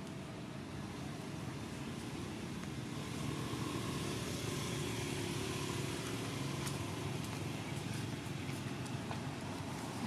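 Steady low rumbling background noise that swells a little about three seconds in and then holds, with a few faint clicks in the second half.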